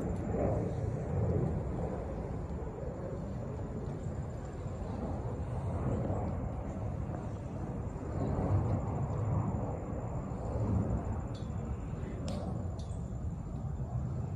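Outdoor crowd ambience: indistinct murmur of people talking nearby over a low steady rumble, with a few faint clicks near the end.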